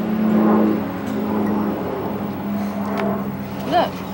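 A steady low motor hum, like a distant engine, swelling over the first second and then holding steady.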